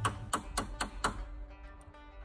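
Metal hammer tapping a new caster's stem into the bottom of a wooden dresser leg: about five quick taps, roughly four a second, stopping about a second in. Soft background music follows.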